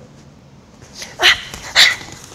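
Two short, breathy vocal bursts, shouts or forceful exhalations, from people grappling in a hair-grab self-defence drill, about a second and a half apart in the second half.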